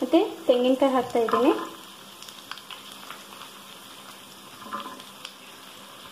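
Sliced onions frying in oil on an iron tawa, a steady low sizzle. A voice hums a few short notes over it in the first second and a half.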